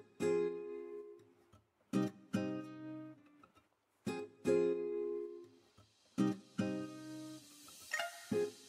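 Background music: strummed guitar chords, coming in pairs about every two seconds, each ringing out before the next.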